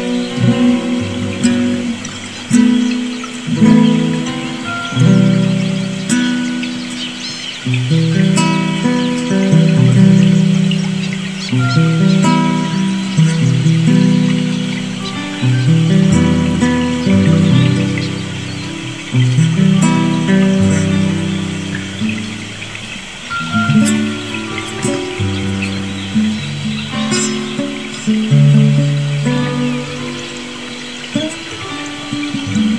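Classical guitar instrumental: plucked notes and chords that ring out and fade one after another, with birds chirping in the background.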